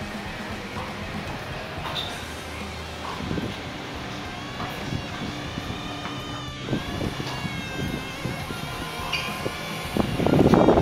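Tennis ball struck by racquets a few times during a doubles rally, faint hits over a steady outdoor background.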